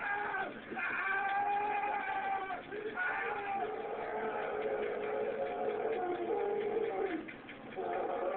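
A man screaming in several long, high-pitched held cries of pain while being shocked by a police taser.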